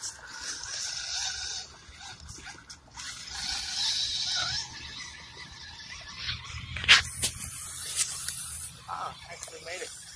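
Small 1/10-scale RC rock crawler driving through a shallow muddy puddle, its tyres churning and splashing water in two bursts of spray. Near the middle come a few sharp clicks, the loudest about seven seconds in.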